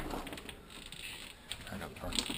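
A storm door being unlatched and pushed open: a sharp click of the latch at the start, then smaller clicks and a faint creak from the door's hardware.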